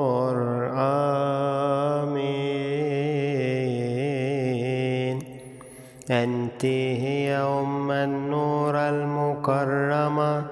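Solo voice chanting an Arabic Coptic Agpeya prayer, drawing out long held notes with wavering ornaments and no clear words. The chant drops away briefly about five seconds in, then resumes.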